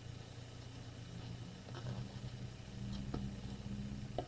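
Faint handling of a small clear plastic jar and a cloth on a craft table: two or three light clicks and taps over a steady low hum.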